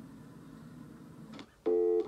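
Faint background noise from the playing clip, then a loud, steady pitched tone that starts suddenly near the end and lasts about a third of a second.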